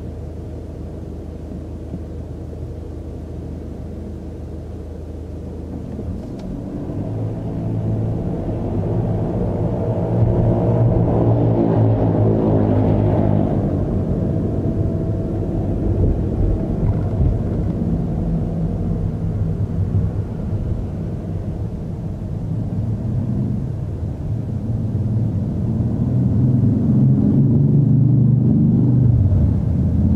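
Car engine and road noise heard from inside the cabin. The engine runs steadily and quietly at first, then the car pulls away about six seconds in with a rising engine note. It settles into cruising, and the engine grows louder again near the end.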